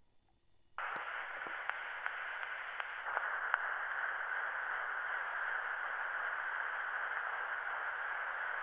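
Surface hiss of a cylinder record playing on a cylinder phonograph. It starts abruptly about a second in as the reproducer's stylus meets the turning cylinder, then runs as a steady hiss with a few faint clicks while the stylus tracks the unrecorded lead-in groove.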